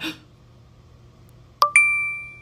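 Apple Pay payment-confirmation chime on a phone: a click, then a bright two-note ding about one and a half seconds in that rings on and fades, the sign that Face ID accepted and the payment went through.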